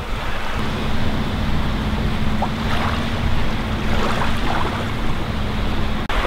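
Small Baltic Sea waves washing onto a sandy shore, with wind rumbling on the microphone. A faint steady low hum sets in about half a second in.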